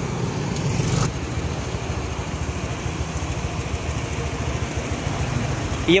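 Road traffic going past: a motor scooter passes in the first second, then a steady hum of engines and tyres.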